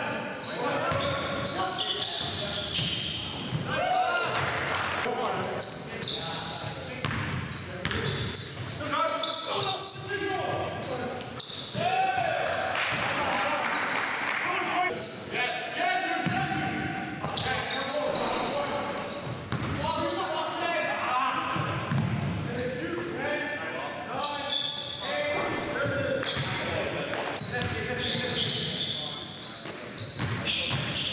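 Live basketball game sound in a large gym: a ball bouncing on the hardwood court and players calling out, echoing in the hall.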